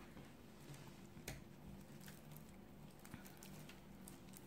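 Near silence: quiet room tone with a few faint clicks and soft rustles from hands handling the knitted fabric, needles and a tape measure.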